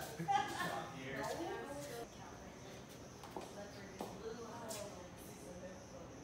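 Indistinct talk among people in a room: a voice in the first two seconds, then a lower murmur of background chatter with a few faint clicks.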